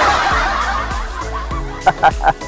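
Men chuckling and laughing, loudest at the start, over background music with steady low notes.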